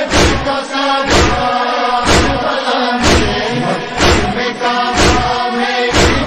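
Chorus chanting the noha's refrain in long held notes, over a heavy thud about once a second: the steady beat of matam, mourners striking their chests.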